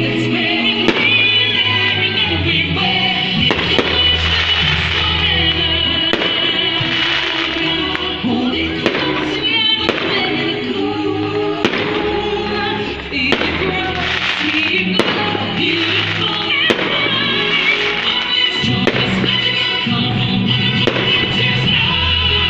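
Music playing steadily with a bass line, over a fireworks display: sharp bangs of bursting shells every second or two.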